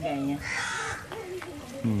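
A crow cawing about half a second in, over a man's voice speaking.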